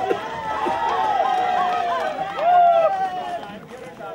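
A voice sounding long, drawn-out pitched notes that rise and fall, loudest about two and a half seconds in and dying away near the end.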